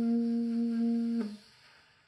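Conn 6M alto saxophone holding one long low note at the end of a phrase, which cuts off about a second in, followed by a brief fade of room echo.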